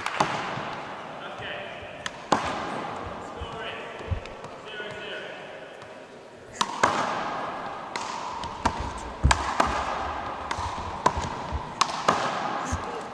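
Big rubber handball slapped by hand and smacking off the wall and hardwood floor in a one-wall handball rally, each sharp hit echoing in the gym. A couple of hits come early, then a quicker run of hits and bounces from about halfway.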